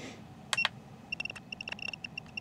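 Two sharp clicks about half a second in, then a quick run of short, high electronic beeps, all at one pitch, from about a second in. They are menu feedback beeps from DJI FPV gear as a setting value is scrolled.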